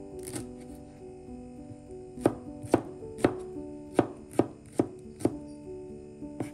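Kitchen knife chopping red chilies and shallots on a plastic cutting board: sharp knocks of the blade on the board, about two a second from about two seconds in, over soft background music.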